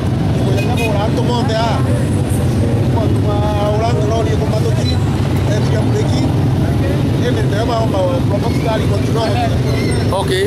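Speech: a man talking close to the microphone over a steady low rumble.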